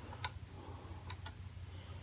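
A few faint, light clicks and scratches of a fingernail picking at the back of an acoustic guitar, feeling for a clear protective plastic film over the finish, over a low steady hum.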